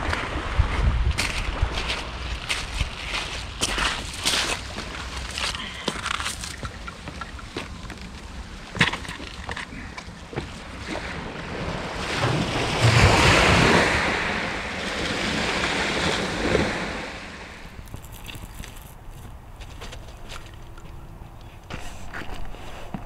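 Footsteps crunching on shingle pebbles, many short sharp crunches, over wind on the microphone and small waves washing on the shore. About twelve seconds in a louder rush of wind and surf builds for several seconds, then eases.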